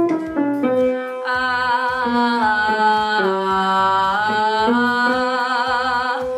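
A woman singing a slow phrase of held notes low in her range, in chest voice: thick, full and loud, with a slight vibrato on some of the longer notes.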